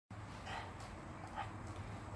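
A spaniel-type dog sniffing faintly at a cardboard box, a few short sniffs.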